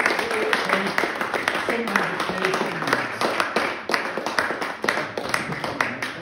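A small group of people applauding, with dense, steady clapping and voices mixed in.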